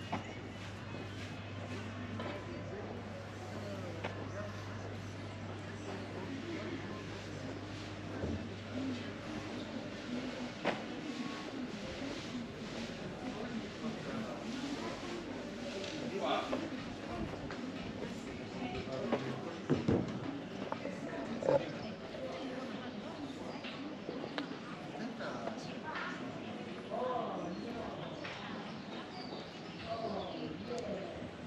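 Street ambience: faint, indistinct voices of people nearby and the walker's footsteps, with a low steady hum that stops about ten seconds in and a few sharp knocks around the two-thirds mark.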